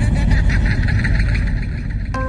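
Loud, steady engine-like rumble, a vehicle sound-effect sample dropped into a reggaeton DJ mix in place of the beat.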